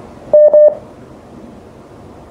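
Two short, loud electronic beeps in quick succession, each a single steady tone, over the background hiss of a telephone call.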